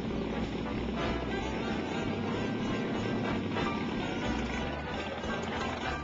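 Engine of a red vintage open-wheel race car running, heard together with background music.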